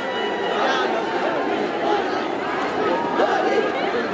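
Crowd chatter: many voices talking and calling over one another at a steady level.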